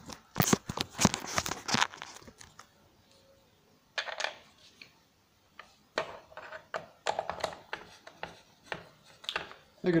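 Clattering and scraping of handling in the first two seconds, then a screwdriver driving screws back into the plastic housing of a Black & Decker belt sander, with scattered clicks and scrapes.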